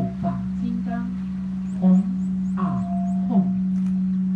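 A group of voices chanting a Buddhist mantra together, holding one steady note, with syllables sliding down in pitch roughly once a second.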